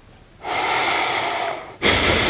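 A person's audible breath: a long out-breath or sigh lasting about a second, close to the microphone, then a sudden sharp breath near the end.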